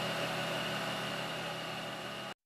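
Small bench lathe running steadily while a hand-held cutting tool shapes a prayer bead on the spinning spindle: an even hiss with a low hum and a thin, steady high whine.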